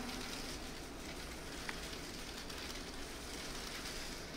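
Faint, steady hiss of a quiet theatre hall in a pause between sung phrases, with one small click about halfway through.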